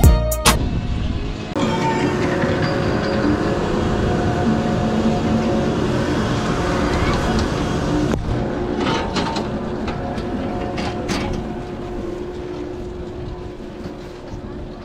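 Chairlift at the loading station: a steady machine hum with a few held tones, a sharp knock about eight seconds in as the chair is boarded, then several clicks as it rides out past the bullwheel. Loud rhythmic music cuts off in the first half-second.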